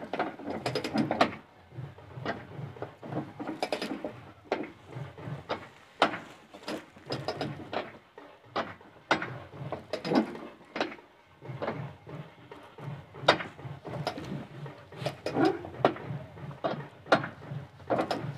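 Irregular metallic clicks and clanks from a tractor-trolley hitch being worked by hand, like a ratchet mechanism, over a faint low pulsing.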